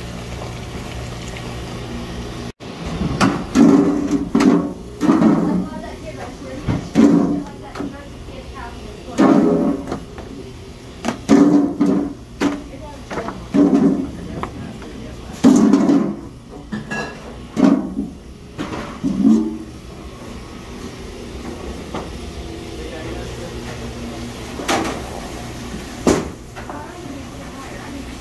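Indistinct voices in short bursts, with pauses between them, over a steady low hum.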